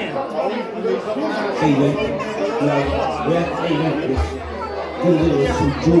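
Crowd chatter: several people talking over one another in a large room, with no clear words standing out.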